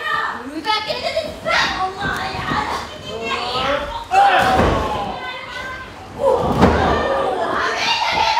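Wrestlers' bodies thudding heavily onto the ring mat twice, about four and six seconds in, among women's voices shouting.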